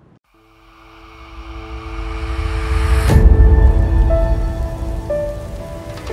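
Channel logo ident music: a rising whoosh over held tones that swells to a loud hit about three seconds in, followed by a couple of short higher notes.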